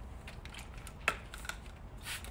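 Hand trigger spray bottle squirting water onto window glass: one short, sharp spray about a second in, with a fainter one shortly after.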